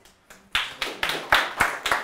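Audience clapping, starting suddenly about half a second in.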